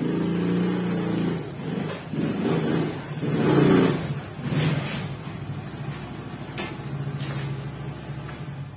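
Small motor scooter engine running as it is ridden in through a doorway, revving up to its loudest about halfway through, then running more evenly at low speed.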